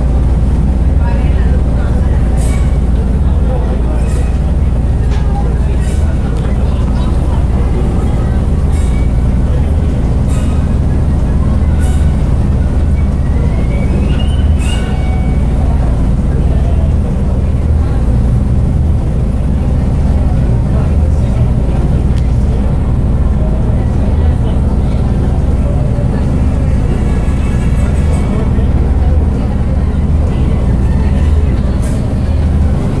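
Steady low rumble of a river tour boat's engine heard on board, with indistinct voices over it.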